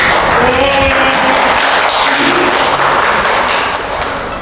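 A small group clapping in applause, a dense run of quick hand claps, with music playing underneath.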